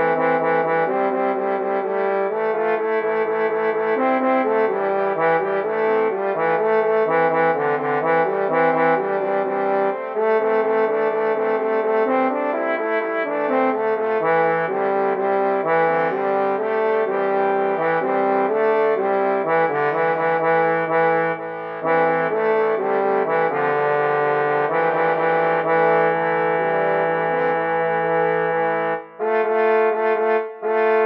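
MIDI rendering of a male four-part chorus arrangement, the vocal lines played as synthesized brass-like tones in sustained, shifting chords, as a baritone part-practice track. There is a brief break near the end.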